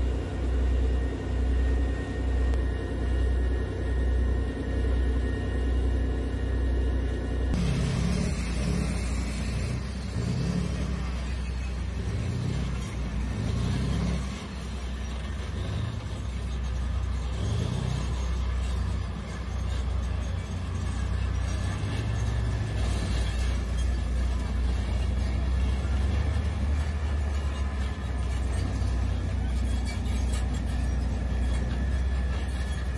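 Tanks running: a low rumble pulsing about once a second, then, after a sudden change about seven seconds in, tanks driving past with a denser, uneven engine and track rumble.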